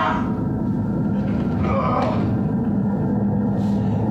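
A steady, low droning hum, with a faint voice briefly about one and a half to two seconds in.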